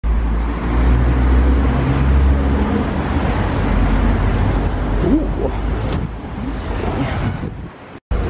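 Street traffic: a car driving past close by, with a heavy low rumble that is strongest in the first couple of seconds and eases off after.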